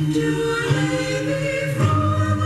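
Christmas music with choir singing, played over the air from a portable radio's speaker: slow, held vocal notes that shift in pitch every so often.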